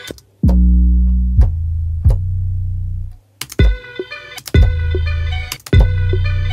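Hip-hop beat playing back: long, heavy 808 bass notes, each starting with a quick downward pitch drop, with sharp percussion clicks. After a brief dropout about three seconds in, a sampled plucked-string melody loop joins over the 808s.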